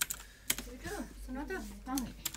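Computer keyboard keystrokes: two sharp key clicks within the first half second, followed by a short stretch of low, mumbled speech.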